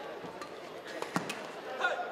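Badminton rackets striking the shuttlecock in a doubles rally: a few sharp hits, the loudest a little after a second in. Voices in the hall murmur underneath.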